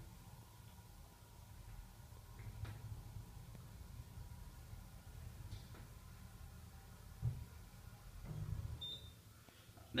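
Faint, steady low hum inside a 1986 Delta hydraulic elevator car as it travels up, with a single knock about seven seconds in and a short high beep near the end.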